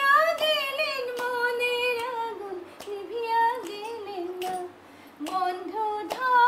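A woman singing unaccompanied in a high voice, holding long notes with a slight waver between short phrases. There is a brief break in the singing about five seconds in.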